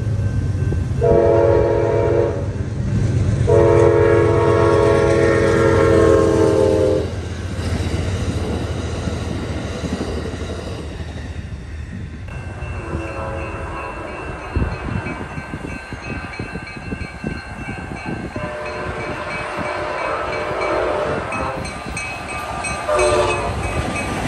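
A train horn sounds two loud blasts for a grade crossing over a low rumble, the second blast longer. From about halfway, crossing-signal bells ring in an even repeating pattern, and the horn sounds again, fainter, late on and once more near the end.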